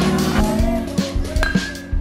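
Background music with a steady beat, about two beats a second, and sustained notes.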